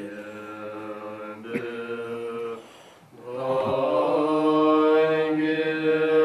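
Tibetan Buddhist monks chanting a prayer together in long held tones. The chant dips to a brief pause about halfway through, then resumes louder.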